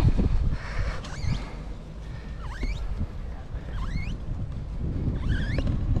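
Steady wind rumble on the microphone of a moving bicycle, with four short dipping-and-rising calls from macaws flying alongside, spaced about a second and a half apart.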